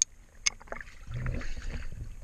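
Two sharp clicks about half a second apart, then water sloshing and splashing around an underwater camera as it breaks the surface beside a boat hull.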